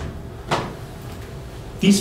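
A single sharp knock, like something set down or bumped on a table, about half a second in; a man starts speaking near the end.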